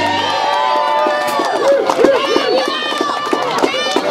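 A concert audience cheering after a rock song ends: many overlapping high-pitched whoops and shouts.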